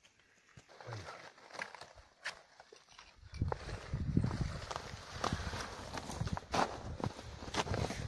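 Footsteps on snow-covered rocky ground: uneven crunching steps with scattered sharp clicks, busier in the second half.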